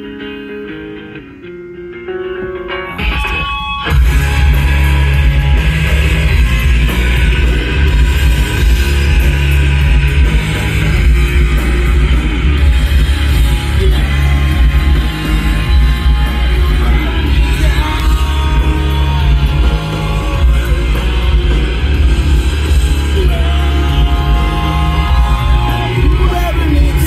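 Rock song playing: a sparse electric guitar opening, then the full band with heavy bass and drums comes in about four seconds in.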